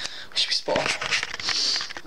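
A young man whispering to the camera in short, breathy syllables, with hardly any voiced tone.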